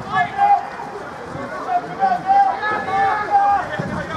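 Footballers shouting to each other across the pitch: a short call at the start, then a longer run of raised calls about two seconds in.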